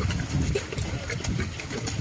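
A carabao (water buffalo) wading and pulling a loaded cart through deep wet mud: an irregular low sloshing of mud and water.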